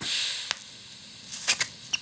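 TIG welding at the torch: a hiss that fades over about half a second, then a faint steady hiss broken by a few sharp clicks, the arc lit by the end.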